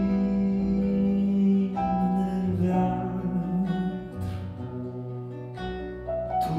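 Live band music from a song: acoustic guitar with held notes that change every second or so, a strong low note sustained through the first half.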